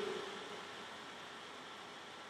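Faint steady hiss of room tone in a pause between sung phrases, with the tail of the last sung note dying away at the very start.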